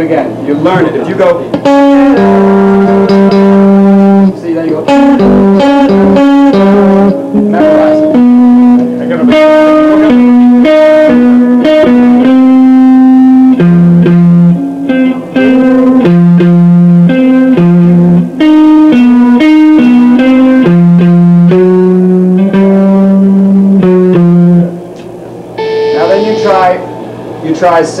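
Electric guitar played through an amplifier: a slow lead melody of long sustained notes, some held for two to three seconds, with quicker note changes in between.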